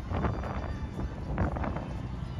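Wind buffeting the microphone outdoors, an uneven low rumble in gusts over general city background noise.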